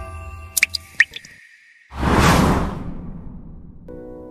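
Water-drop sound effects for an animated logo intro: two quick rising drip plinks about half a second and a second in, then a loud whoosh about two seconds in that fades away, over dying music tones.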